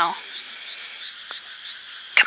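A steady, distant chorus of small rice-paddy frogs, a little quiet at this moment, heard as an even high-pitched trill with no single calls standing out.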